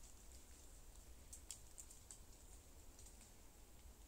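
Near silence, with a few faint, sharp clicks scattered through the middle.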